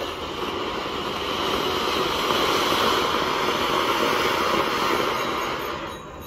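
Ground fountain fireworks (anar) spraying sparks: a steady crackling hiss that swells about a second and a half in and falls away near the end.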